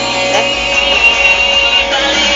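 Music with guitar playing from a home hi-fi stereo system, with a high note held for about a second in the middle.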